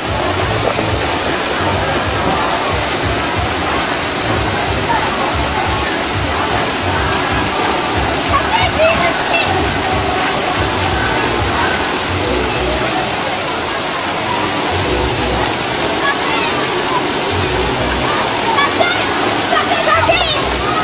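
Steady rush of running water at a water park, with scattered voices of people around.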